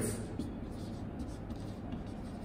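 Marker pen writing on a whiteboard: quiet short strokes of the tip over the board as words are written.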